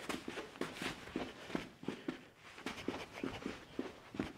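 Sneaker footsteps on artificial turf: quick, light shuffle and crossover steps, about four a second.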